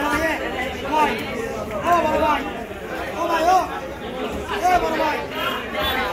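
People talking and chattering.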